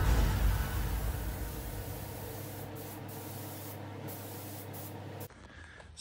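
Gravity-feed paint spray gun hissing as it lays a lime-green base coat on a car body. The hiss fades gradually and cuts off about five seconds in.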